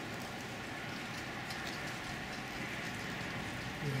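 Steady, even outdoor background noise with no distinct events, like a hiss of distant ambience. A man's voice begins at the very end.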